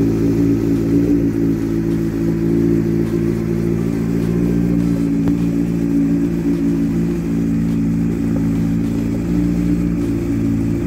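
Honda CBF600's inline-four engine idling steadily.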